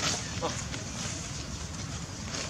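Outdoor ambience with indistinct background voices.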